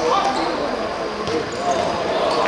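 Players shouting and calling out during a small-sided football match, with the thud of the ball being kicked on the hard court.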